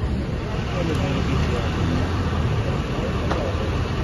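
Armoured vehicle's engine idling with a steady low rumble, amid people talking nearby.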